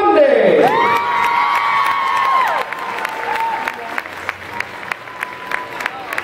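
Crowd cheering for an award winner, with long high-pitched screams over the first couple of seconds, then applause with sharp, evenly spaced claps about three a second.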